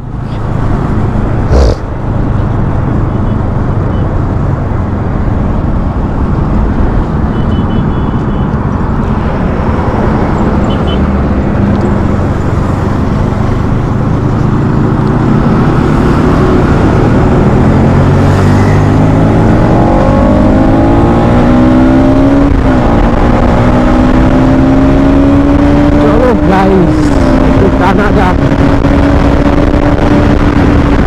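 Bajaj motorcycle engine heard from the rider's seat over steady wind and road rush, pulling harder and rising in pitch through the second half as it accelerates, with two brief drops in pitch near the end where it shifts up a gear and climbs again.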